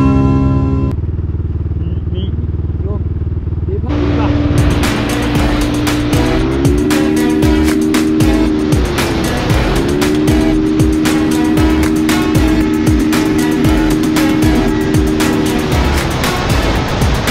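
Motor scooter engine running at steady high revs while riding, its pitch rising about six seconds in and dipping briefly near nine seconds before holding steady again. Music with a beat plays over it.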